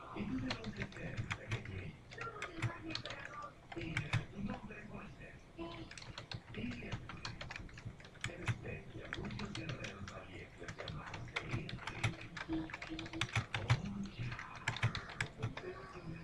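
Typing on a computer keyboard: a steady run of quick key clicks as a sentence is typed out.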